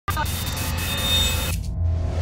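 Intro logo sound effect: a bright, hissing swish with a few faint high tones that cuts off after about a second and a half, over a steady low hum.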